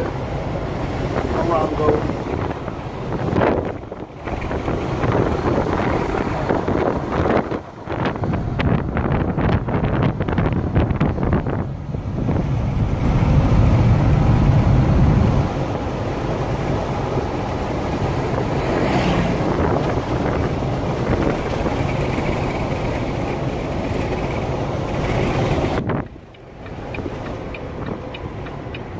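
Steady engine and road noise inside a moving Volvo semi truck's cab, with wind buffeting the microphone. It swells for a couple of seconds midway and drops away briefly a few times.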